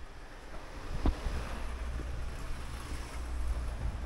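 Wind rumbling on a handheld camera's microphone, with the hiss of a car driving past on the street, building over a few seconds and peaking near the end; one faint click about a second in.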